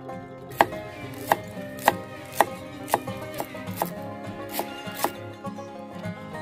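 Kitchen knife chopping green herbs on a wooden chopping block: about nine sharp strikes, roughly two a second, stopping about five seconds in. Background guitar music plays underneath.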